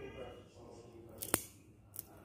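Eyeglass frame and lens being worked together by hand, giving short sharp clicks: two close together a little past one second in, another at the very end.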